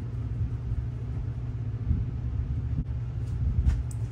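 Steady low background rumble, with a faint click a little under three seconds in.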